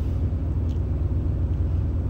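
Steady low rumble with no change in pitch, the recording's constant background noise.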